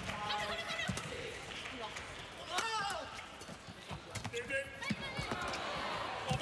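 Badminton rally: sharp racket hits on the shuttlecock at irregular intervals, with players' shoes squeaking on the court in short pitched, gliding squeals.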